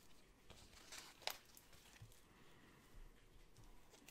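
Near silence with faint crinkling of a paper sticker sheet being handled and a sticker peeled and pressed down, including one sharp tick a little over a second in.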